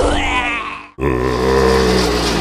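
Recorded ghoulish voice effects from Spirit Halloween animatronics. A wavering, warbling voice fades out into a brief silence just before a second in. Then a new, low, drawn-out voice sound starts over a steady low hum.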